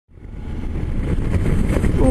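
Motorcycle riding along an open road: steady engine rumble mixed with wind noise on the microphone, fading in from silence over the first half second.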